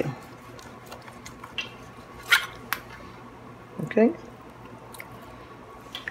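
A kitchen knife slicing through raw chicken breast on a plastic cutting board, with a few sharp clicks of the blade against the board. The loudest comes a little over two seconds in.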